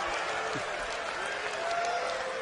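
Live audience applauding steadily, with faint voices mixed into the clapping.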